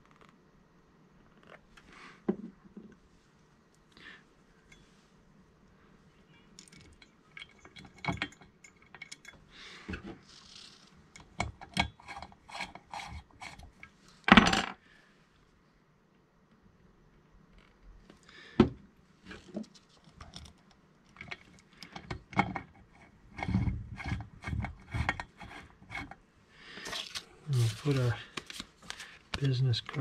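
Small metal parts and hand tools being handled during workbench assembly of a chainsaw: scattered clinks, taps and light scrapes, with one sharp knock about halfway through and busier clatter near the end.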